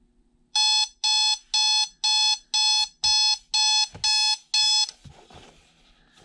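Digital alarm clock going off: nine short electronic beeps, about two a second, then the beeping stops suddenly.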